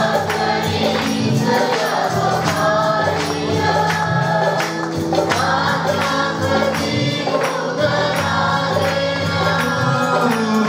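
A mixed group of men and women singing a Marathi Christian worship song together over instrumental backing, with a steady percussion beat.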